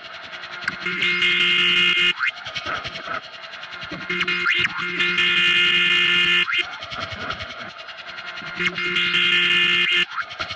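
Looped experimental sound piece made from a blow dryer and a laundry dryer: a steady hum of several tones that cuts in and out about every four seconds, with short rising sweeps in between.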